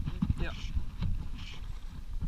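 Fly line swishing through the air during false casts, about once a second, over low knocks from the small boat and wind rumble on the microphone.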